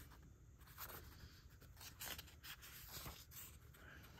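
Faint rustling of thin catalogue pages being turned by hand, a few soft paper swishes as the pages brush past each other.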